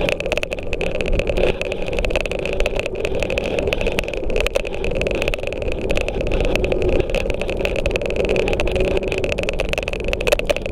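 Scooter rolling steadily across a concrete floor: a continuous running noise with a steady high whine and many small clicks and rattles throughout.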